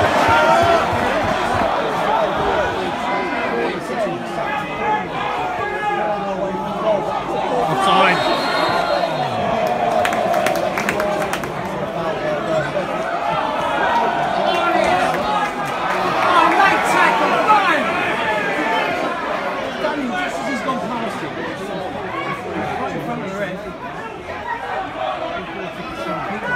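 Many spectators talking among themselves around the microphone: a steady hubbub of overlapping voices, with a few sharp knocks about eight to eleven seconds in.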